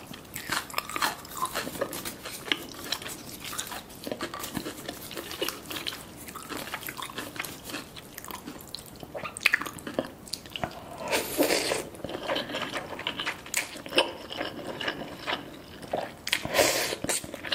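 Close-miked eating of a spicy soft tofu stew with ramen noodles: chewing and slurping noodles, with many light clicks from wooden chopsticks and a wooden spoon.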